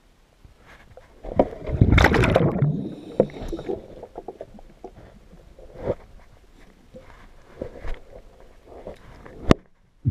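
Recorded underwater: a diver's exhaled air bubbles out in one loud rush about a second and a half in, followed by scattered clicks and knocks of hands and gear against a boat hull, with one sharp click near the end.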